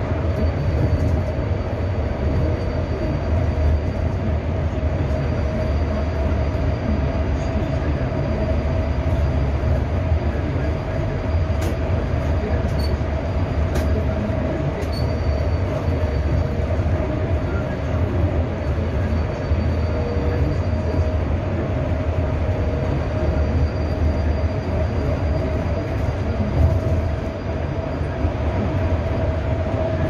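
Interior of a low-floor electric city bus driving at steady speed: a constant low road rumble with a steady whine over it, and no engine note.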